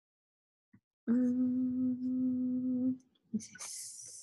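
A woman humming one held note for about two seconds, a steady 'mmm' while she thinks; a short hiss follows near the end.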